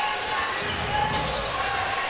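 A basketball being dribbled on a hardwood arena court, over steady crowd noise and voices in the hall.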